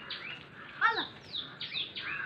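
A bird chirping: a quick series of short, high chirps that fall in pitch, several a second, with one louder call about a second in.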